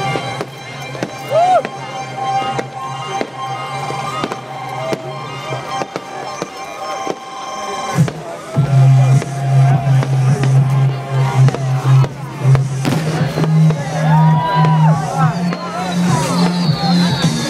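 Fireworks bursting and crackling, with a sharp bang about eight seconds in, over loud dance music with a heavy, steady bass line and crowd voices.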